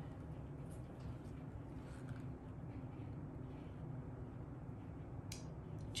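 Quiet room tone: a low steady hum with a few faint soft handling sounds, and one sharp click a little after five seconds.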